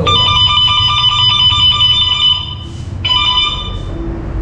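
Benling Aura electric scooter's anti-theft alarm sounding: a loud electronic tone that stops a little after two seconds in and sounds again briefly just before the end.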